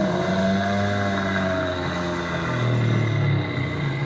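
Animatronic Ankylosaurus's built-in speaker playing a recorded dinosaur roar: one long, low call that drops in pitch about two and a half seconds in.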